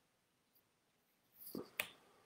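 Near silence, then near the end a brief soft sound followed by a single sharp click.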